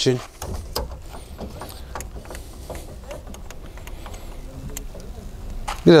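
Faint scattered clicks and light knocks from a caravan's stabiliser hitch coupling being handled on the tow ball, over a low steady rumble.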